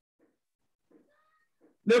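Near silence in a pause of a man's preaching, broken only by a few faint, brief sounds, with a faint short high tone about a second in; his voice comes back in just before the end.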